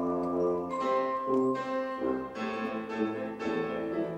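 Contemporary chamber music played live by a trio of piano, vibraphone and tuba: struck chords ringing on over low sustained notes, with a new chord roughly every second.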